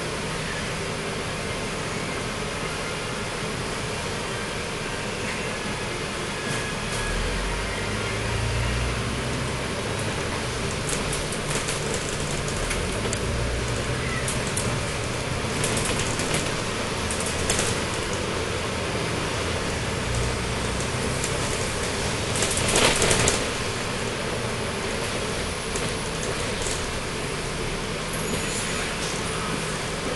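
Dennis Trident double-decker bus heard from the upper deck. Its rear-mounted diesel engine hums at idle, then rumbles heavier as the bus pulls away after about seven seconds, with light rattles of the body. About three-quarters of the way through, a loud hissing burst lasts about a second.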